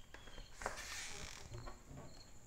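Faint handling of a double-hung window's upper sash as it is unlatched and tilted in: a light click about two-thirds of a second in, then soft sliding and rubbing. A thin high insect trill comes and goes behind it from about halfway.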